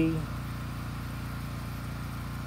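A small engine running steadily: a low, even hum with a regular pulse.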